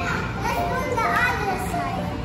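Children talking and playing, a young girl's voice calling 'tara' (let's go) over a steady hubbub of background noise.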